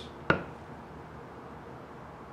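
A single short wooden knock about a third of a second in as the lid of the hinged wooden box is handled, then quiet room tone.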